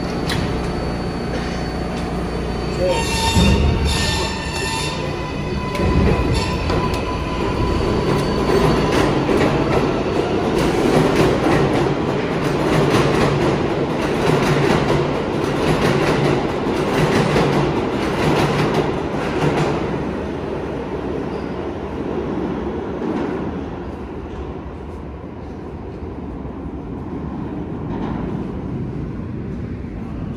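An R188 subway train pulling out of the station and running past on the track. A high whine starts about three seconds in as it gets moving. Then comes the rumble and rapid clicking of the cars' wheels passing, loudest in the middle, fading in the last third as the train leaves.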